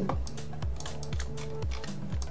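Light, rapid clicking from computer keyboard and mouse use, over soft background music with steady low tones.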